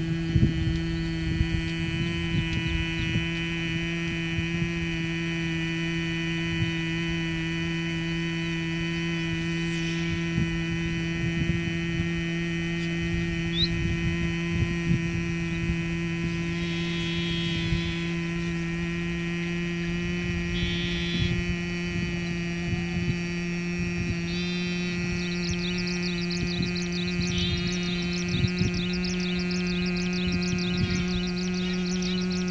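A man's steady, low humming tone, the bee-like sound of Bhramari pranayama, made from the throat with ears blocked and nostrils partly closed. It holds as one even pitch and rises slightly near the end.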